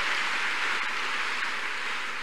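Congregation applauding, the clapping slowly dying away.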